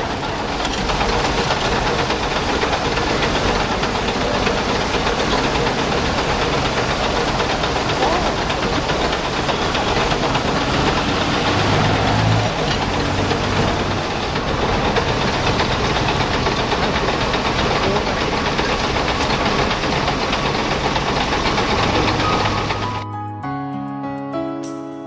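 Loud, steady roadside noise from an engine running nearby, with voices mixed in. About a second before the end it cuts off suddenly and music comes in.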